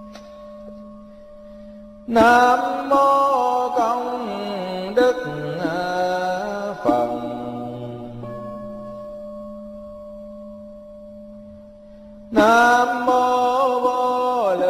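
Vietnamese Buddhist chanting: a voice chants two long, drawn-out phrases that glide in pitch, one beginning about two seconds in and the next near the end. A steady background drone carries on alone in the gap between them.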